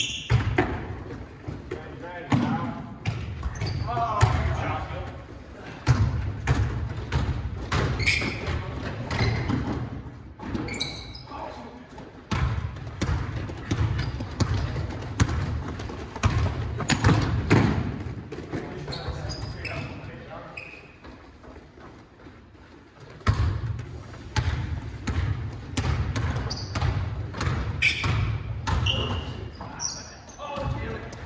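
Basketballs dribbling and bouncing on a hardwood gym floor during a pickup game, with players calling out, all echoing in a large hall. The play goes quieter for a few seconds past the middle, then picks up again.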